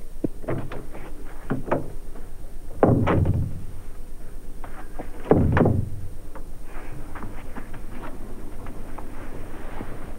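A few light knocks, then two heavier thuds about two seconds apart, from doors being shut.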